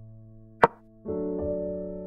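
A single sharp click, the move sound effect of a chess piece being placed, about half a second in, over background music: held chords that fade, then a new chord starting about a second in.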